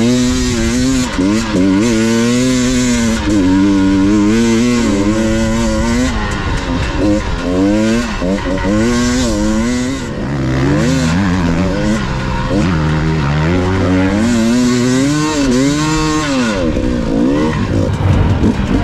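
KTM enduro dirt bike engine under way on a sandy trail, its revs rising and falling again and again as the throttle is worked, with a short let-off about halfway through.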